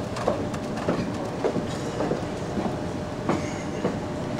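A cantering horse's hoofbeats on sand arena footing: a thud at each stride, evenly spaced nearly twice a second, over steady outdoor background noise.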